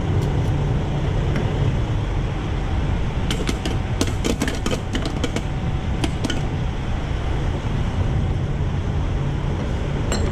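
Steady low rumble of idling diesel truck engines at a fuel island. About three seconds in comes a run of sharp metallic clicks and clinks from the diesel pump nozzle being handled, lasting a few seconds.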